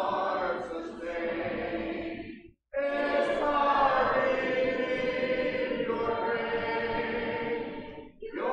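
A church congregation singing a hymn unaccompanied, many voices together. There is a brief silence about two and a half seconds in, after which the singing resumes.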